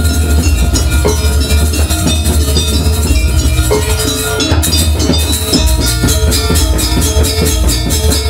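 Gamelan music accompanying a Janger dance: drums and metal percussion playing a loud, dense rhythm over sustained low notes, with a quicker, sharper run of strikes from about halfway.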